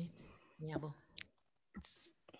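A brief fragment of a person's voice, then a couple of sharp clicks.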